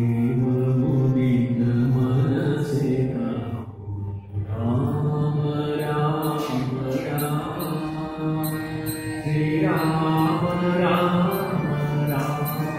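A man singing a slow devotional bhajan, accompanied by a harmonium holding steady chords under his voice, with a brief break about four seconds in.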